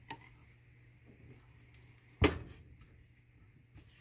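A wire soap cutter slicing a bar from a soap loaf, with small faint clicks from the wire. About two seconds in comes a single sharp knock, most likely the cutter arm coming down onto its wooden base as the wire finishes the cut.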